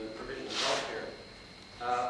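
Indistinct voices in a room, with a short burst of noise about half a second in.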